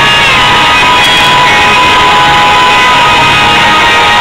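Rock band playing live and loud, with an electric guitar holding a long note that bends down slightly at the start, over drums.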